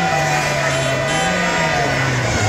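Singing with a slow rising-and-falling melody over the dense noise of a large street crowd.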